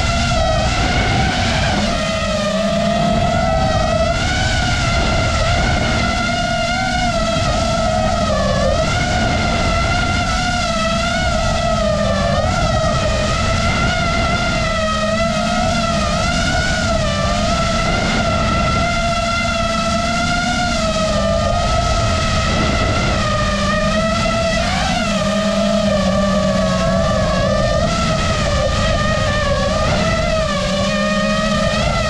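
FPV quadcopter's motors and propellers, heard from the GoPro on the drone: a steady high whine whose pitch wavers up and down with the throttle, over a rumble of wind on the microphone.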